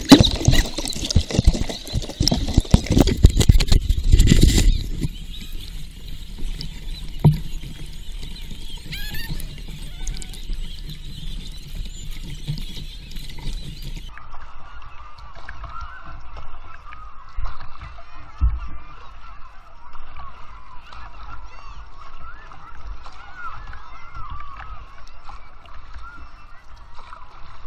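Water splashing and sloshing against a kayak as it is paddled with wooden paddles. The splashing is heavy and dense for the first few seconds, then settles into quieter, steady lapping.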